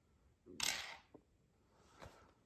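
A penny struck by hand and sent sliding up a wooden shove ha'penny board: a short scraping slide about half a second in, then a light tick just after.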